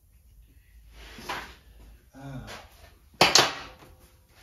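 Handling noise in a workshop, ending in one sharp clunk a little over three seconds in that rings briefly and is the loudest sound.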